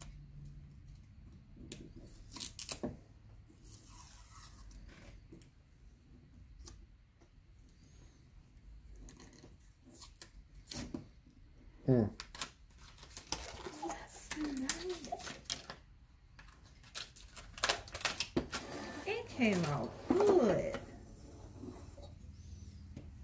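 Sublimation transfer paper rustling and tearing in short scattered crinkles and clicks as it is peeled off a freshly heat-pressed mug. In the second half a voice is heard, with no clear words.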